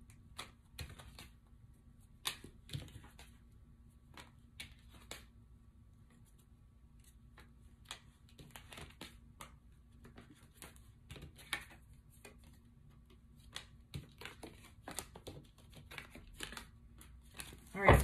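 A deck of tarot cards being shuffled and handled by hand: soft, irregular clicks and rustles of cards, in short scattered clusters.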